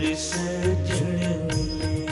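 Kirtan instrumental interlude: harmonium playing a sustained reedy melody over regular tabla strokes, with deep low notes from the bass drum.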